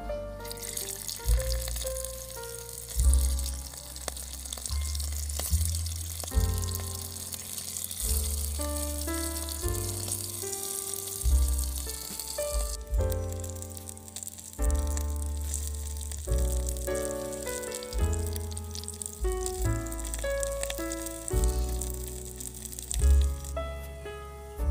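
Small pieces of boal fish sizzling in hot oil in a miniature wok: a dense sizzle starts about half a second in as the fish goes into the oil, stays strong for about half the stretch, then carries on fainter. Instrumental background music with melody notes and a pulsing bass plays throughout and is the loudest sound.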